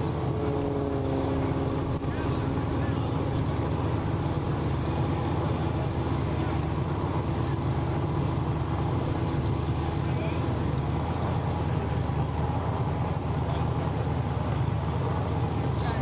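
Steady low rumble of vehicle engines running, with a faint droning tone over it that fades out about ten seconds in.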